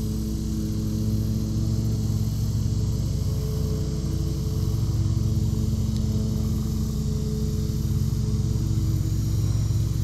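A lawn mower engine running steadily in the background, a constant low drone that holds one pitch without revving up or down.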